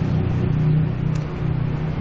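A steady low engine-like hum with a fixed pitch, dipping slightly in level partway through.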